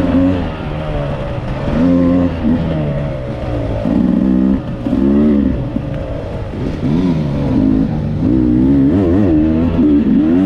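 Dirt bike engine under the rider, its pitch rising and falling over and over as the throttle is worked along a rough, twisting trail.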